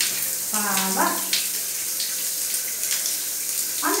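Running water from a shower spraying steadily onto a tiled floor, a constant hiss with small splashes.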